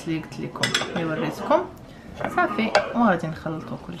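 Wooden spatula knocking and scraping against a glazed clay cooking pot, with sharp clicks, as chopped herbs are stirred in.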